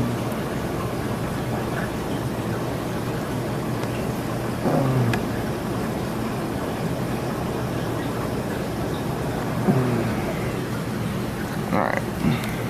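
Steady rush of reef-aquarium water circulation, water running through the tank's filtration with a low pump hum underneath. Three brief, louder, low sounds with falling pitch come about five, ten and twelve seconds in.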